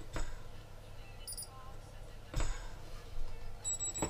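Short high electronic beeps from the quad's ESC sounding through the motor as the motor is turned by hand to set its spin direction with rotor sense. There is a brief beep about a second in, a light click midway, and a longer steady beep near the end.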